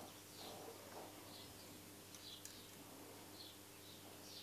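Near silence: a faint low steady hum, with a small bird chirping faintly about once a second.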